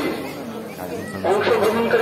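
People talking: several voices chattering, quieter for a moment and then a voice coming in louder about a second and a quarter in.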